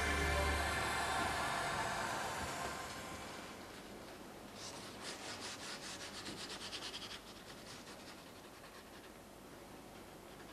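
Background music fading out over the first few seconds. Then, about halfway through, a quick run of faint scrubbing strokes, several a second for about two seconds, as paint is rubbed onto a canvas.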